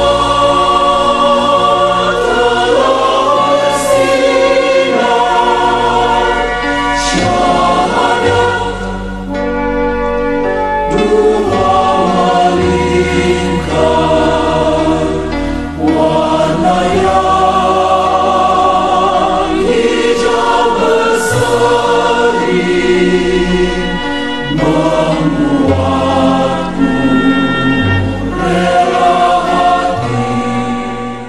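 Background music: a choir singing sustained, harmonised lines over a steady low accompaniment.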